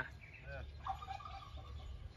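Faint, distant calls from domestic fowl kept in a backyard coop, a brief wavering call about a second in over a low steady background rumble.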